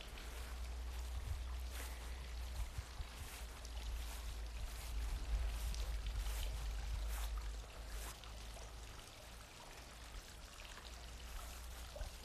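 Low wind rumble on a phone's microphone over a faint, steady trickle of water from a small garden fountain.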